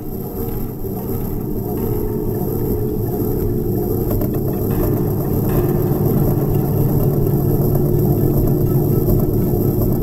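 Experimental drone music: a dense, low rumbling drone with a few steady held tones above it, slowly swelling in loudness.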